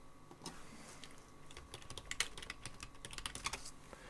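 Faint computer keyboard typing: a quick run of key clicks, mostly in the second half, as a short search query is typed.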